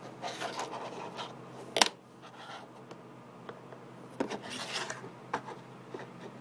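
Hand-cranked laser-cut plastic walker robot working: its cams and legs rub and rasp in two stretches, with one sharp click about two seconds in, the loudest sound, and a few smaller clicks later.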